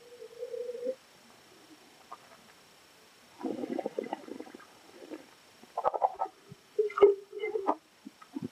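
A taster drawing red wine into the mouth with a short steady slurp, then swishing and gurgling it in the mouth in several bursts, with a few light knocks as the glass is set down and a metal spit cup is picked up.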